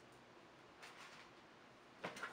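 Near silence: faint room hiss.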